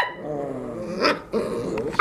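Two puppies growling at each other, two drawn-out growls broken by a short sharp yip about a second in.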